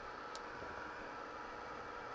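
Faint steady hiss with a low hum, room tone, and a brief faint tick about a third of a second in.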